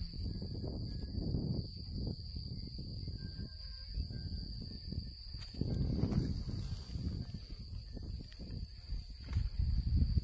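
Outdoor ambience: an uneven low wind rumble on the microphone, with a steady high-pitched insect drone from the grassy field.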